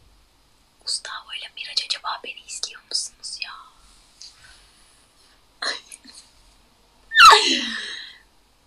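A young woman whispering softly to herself for a few seconds, then a short, loud laugh near the end.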